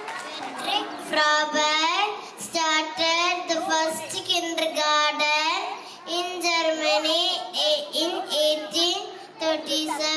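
A young child singing solo into a microphone, a high voice holding long notes of about a second each with short breaks between phrases.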